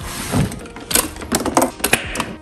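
Nespresso Vertuo coffee machine's head being opened by hand: a quick run of hard plastic clicks and knocks, clustered in the second half.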